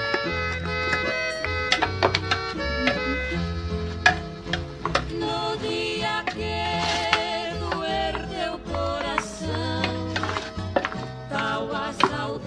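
Background music: an instrumental song with a steady bass line, and a voice singing in places.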